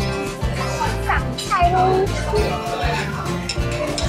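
Background music with a steady, repeating bass line, and a few short sliding vocal-like tones about a second in.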